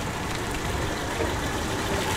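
Classic Studebaker cars driving slowly past, their engines running with a steady low sound under a broad even noise.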